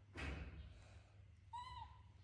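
Baby monkey giving one short, high coo call that rises and falls in pitch, about one and a half seconds in. A brief noisy burst, louder than the call, comes near the start.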